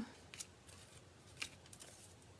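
Faint hand-handling sounds of mesh ribbon being fluffed up, with two soft ticks.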